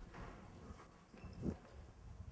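Faint hall room noise with scattered soft knocks and one low thud about one and a half seconds in.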